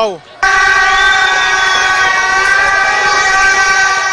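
A loud, steady horn tone of one fixed pitch. It starts suddenly about half a second in and is held for about three and a half seconds.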